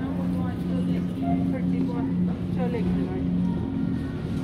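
Supermarket background sound: a steady low hum under faint, distant voices.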